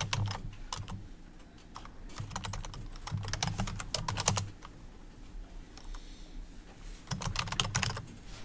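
Typing on a computer keyboard in several short bursts of rapid keystrokes with pauses between, as an email address and then a password are entered.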